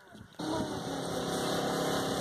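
Engine running steadily with a low, even hum, starting abruptly about half a second in, as a hose fills a mud pit with water.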